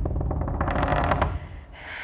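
Trailer sound-design effect: a fast stuttering rattle of clicks over a low rumble that cuts off about a second and a quarter in, followed by a short hiss near the end.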